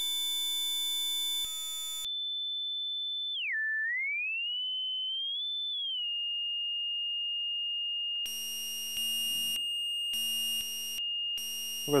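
Built-in tone generator of a RANE Performer DJ controller sounding test tones as the tone type is stepped: first a buzzy square-wave tone, then a pure sine tone that swoops down in pitch and back up before holding a steady high note. From about eight seconds in, buzzier tones cut in and out over the steady sine.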